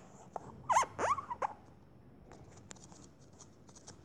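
A few short squeaky chirps, sweeping down and up, about a second in, then faint ticking and scratching of drawing strokes on a tablet touchscreen.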